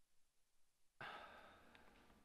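Near silence, then about a second in a man's breath or sigh into a lectern microphone, starting suddenly and fading over about a second.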